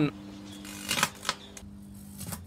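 Microwave oven running, a steady low electrical hum, with a few sharp clicks about a second in.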